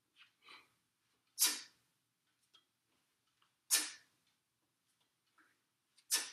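A man's sharp, forceful breaths, one with each kettlebell clean rep: two loud short exhalations about two seconds apart, with softer breaths between them.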